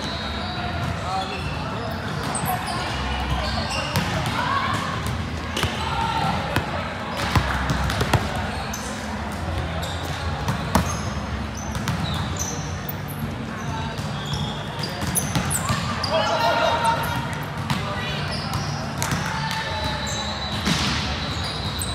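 Gym ambience: players' voices and chatter in a large hall, with a ball bouncing and hitting the sport-court floor as sharp knocks scattered throughout, and short high squeaks.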